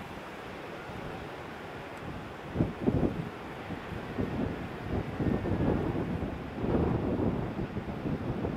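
Wind buffeting the camera microphone over a steady wash of ocean surf. The buffeting is light at first, then comes in stronger, irregular gusts from about two and a half seconds in.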